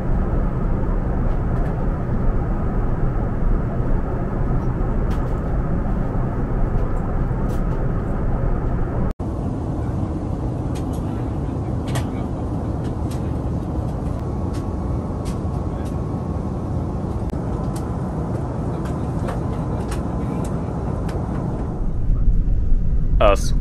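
Steady cabin noise inside an Airbus A380 in flight: a low, even rush of airflow and engine noise. There is a brief dropout about nine seconds in, and a few faint clicks after it.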